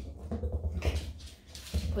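A corgi moving about on a hardwood floor as it noses a rubber toy along, with a few light taps and knocks from its paws and the toy on the wood.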